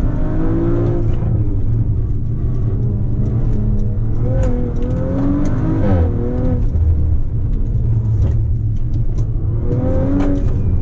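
Audi B9 RS4's tuned twin-turbo V6 heard from inside the cabin while driven hard, its note rising and falling with throttle over a steady low road rumble, with a quick upward sweep about six seconds in.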